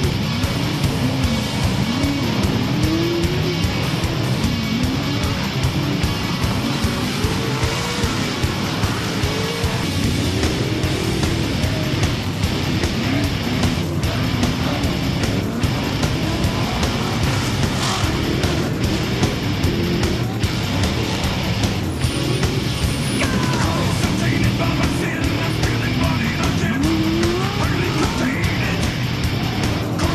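Off-road race trucks racing on a dirt course, their engines revving up and down repeatedly as they accelerate and lift, with rock music playing over them.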